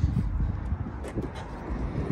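Low rumble of wind on the microphone, with a couple of faint light knocks about a second in as the trunk's under-floor storage compartment is handled.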